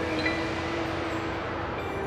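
A jazz band playing a soft, sustained passage: long held keyboard notes with a light chime-like shimmer struck about a quarter second in.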